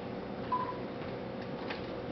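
A single short electronic beep about half a second in, over faint steady room hum, with a couple of light clicks later.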